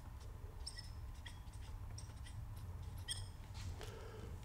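Marker tip squeaking faintly on a glass lightboard while words are written: a quick series of short, high squeaks, with a low steady hum underneath.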